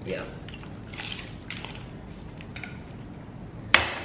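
Tableware on a glass-topped breakfast table: a few faint clicks, then one sharp clink near the end.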